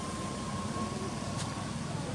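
Steady background noise: a low hum under a broad hiss, with a faint thin steady tone, and one brief sharp click about one and a half seconds in.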